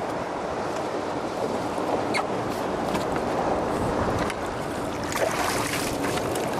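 Wind rushing over the microphone and choppy water splashing along the side of a boat, a steady noise with a few faint clicks.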